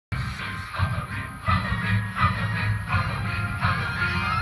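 Music with a heavy bass beat about every three-quarters of a second, played through the yard display's loudspeakers and subwoofer during a sound check.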